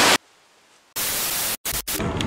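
Bursts of loud static hiss cut with dead silence, as an editing transition: a short burst at the start, a gap of silence, then a longer burst about a second in that breaks up choppily. Just before the end it gives way to the steady low noise of a car cabin.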